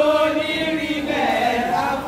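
A group of women singing together, several voices holding and sliding between long notes.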